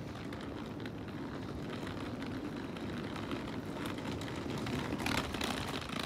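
Passenger train running: a steady low rumble with scattered clicks and rattles, and a brief louder hiss about five seconds in.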